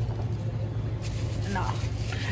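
Steady low hum of indoor background noise, with a brief spoken word near the end.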